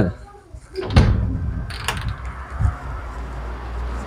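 Footsteps and small knocks as someone walks through doorways on a hard floor, with a sharp knock about a second in and a click just before two seconds, over a low steady rumble.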